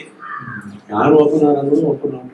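A man talking in a conversation, with a short pause early on.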